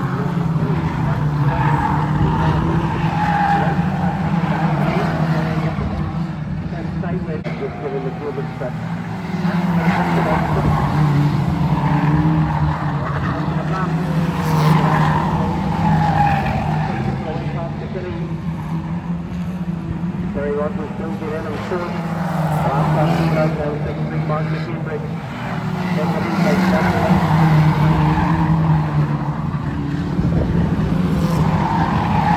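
A pack of Lightning Rods stock cars racing on an oval, engines revving up and down and swelling louder as cars come past every several seconds, with tyres squealing through the bends.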